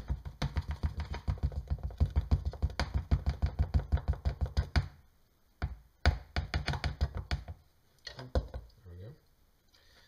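Cornstarch canister being shaken and tapped in quick repeated knocks, about five a second, to work the powder out into a measuring cup. There is one long run of taps, a pause, a second shorter run, and a last few taps near the end.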